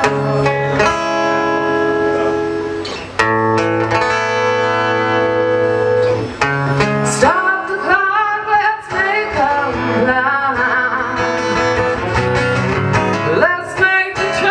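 A woman singing live into a microphone over strummed acoustic guitar. She holds long notes through the first half, then about seven seconds in moves to a busier, wavering line.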